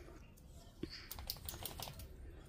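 Hands working among the leaves and potting soil of potted geraniums: a quick run of faint, light clicks and crackles beginning about a second in.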